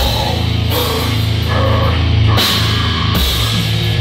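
A heavy metal band playing live, loud: heavy distorted electric guitar with sustained low notes over a drum kit, with cymbal crashes about a second in and again past two seconds.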